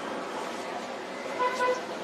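Two short vehicle-horn toots about one and a half seconds in, over a steady background hiss.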